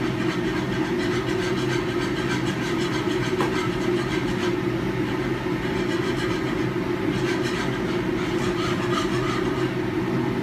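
Steady, loud rumble of a commercial kitchen exhaust hood fan running throughout, with the faint, repeated scrape of a whisk working flour into melted butter for a roux.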